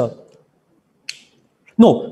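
A man's speech breaks off, and about a second in there is a single short, sharp click before he speaks again.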